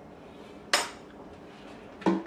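A single sharp metallic clack as a kitchen knife is set down on a stone countertop.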